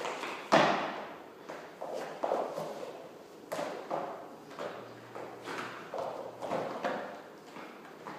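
Thuds and shuffles of a person getting down onto a rubber gym floor and standing back up again and again, hands and feet landing on the mat. The loudest thud comes about half a second in.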